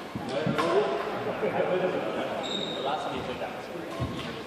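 Badminton rally in an echoing sports hall: sharp racket hits on the shuttlecock and footfalls on the wooden court, clustered in the first second, with a brief high shoe squeak a little past halfway and voices chattering from other courts.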